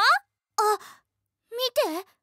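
High-pitched female character voices, acted exclamations: the tail of a shout at the start, a short call trailing into breath about half a second in, and a quick exclamation near the end, with brief silences between.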